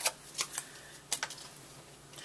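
Light handling sounds of a rubber stamp die being fitted onto a wooden stamp block: a few short sharp clicks and taps in the first second or so, then quieter rustling.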